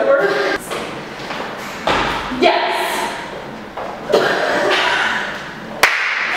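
People talking in a large, echoing room, with a dull thud about two seconds in and a sharp click near the end.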